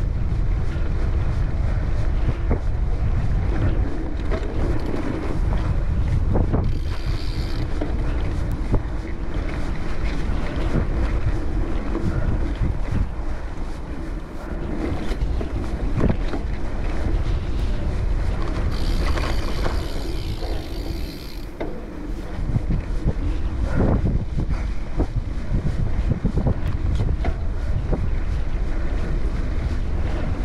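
Wind buffeting the microphone of a Cannondale Topstone gravel bike rolling along a dirt trail, with steady tyre rumble and frequent small knocks and rattles from the bike over bumps.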